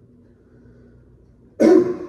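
A man coughs once, loudly and suddenly, about one and a half seconds in.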